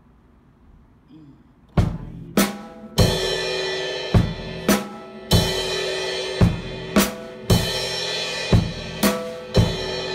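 Acoustic drum kit starting up about two seconds in: a groove of sharp snare and bass drum hits, about two a second, with cymbals ringing between them.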